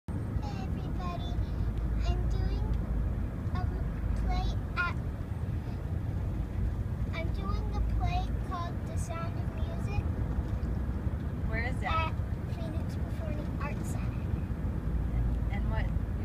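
Steady low rumble of a moving car, heard from inside the cabin, with a young girl's voice in short, soft snatches over it.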